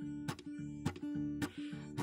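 Solo blues guitar playing a repeating hill-country riff: droning low strings under picked strokes about two a second.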